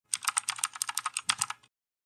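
Computer keyboard typing: a quick run of about a dozen key clicks that stops about a second and a half in.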